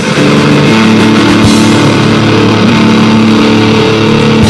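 Live rock band playing a loud, distorted instrumental passage: sustained electric guitar chords over a drum kit.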